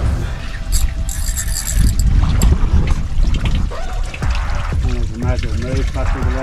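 Wind rumbling on the microphone over water sloshing against a boat hull, with a person's voice calling out in the last couple of seconds.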